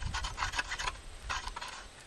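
Light scratching and clicking of two wooden-handled steel hoes being shifted and rubbed together in the hands, with most of the clicks in the first second, over a low rumble.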